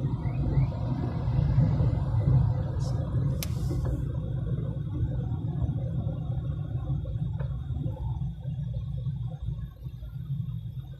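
Low, steady rumble of a car driving slowly along a city street: engine and tyre noise. A short sharp click with a brief hiss sounds about three and a half seconds in.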